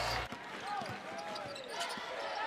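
Live court sound at a basketball game: a basketball dribbled on the hardwood floor, with faint voices in the arena.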